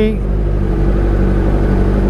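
Kawasaki Z900's inline-four engine running steadily at low revs while the bike rolls slowly in traffic, over a steady low rumble.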